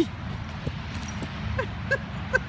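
A husky giving a few short, high yips and whines, mostly in the second half.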